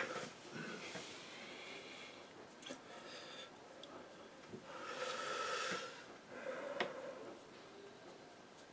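A person breathing heavily through the nose close to the microphone, several long breaths, some with a faint whistle. The loudest breath comes about five seconds in, and a short click follows near the end.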